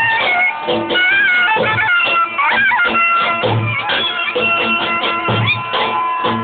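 Zurna (Albanian curle) playing a shrill, ornamented melody with pitch slides over a lodra, a large double-headed drum, beating a steady rhythm, with heavy strokes about once a second and lighter strokes between them.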